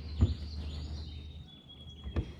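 Quiet outdoor ambience with a low steady hum and faint high bird calls, broken by a single sharp knock about a quarter of a second in.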